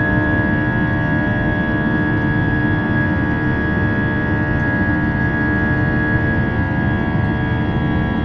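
Cabin noise of an Airbus A320-232 climbing after take-off, its IAE V2500 engines at climb power: a steady rush with several steady whining tones on top, one high and one lower.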